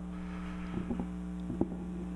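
Steady low electrical hum, with a few faint clicks in the middle.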